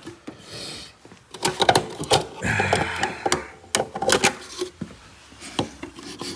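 Fuel filler door of a 1997 Lincoln Town Car pressed open and the gas cap worked loose by hand: a run of plastic clicks and knocks, with a short hiss about two and a half seconds in.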